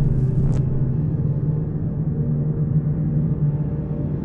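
Deep, steady rumbling drone of a cinematic trailer soundtrack, with a brief airy swish fading out about half a second in.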